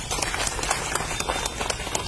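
Audience clapping: many separate hand claps in quick, irregular succession.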